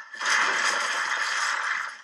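Loud sound effect from the film's soundtrack, a noisy rush with no pitched tone lasting about a second and a half, as Jason seizes a man in a phone booth.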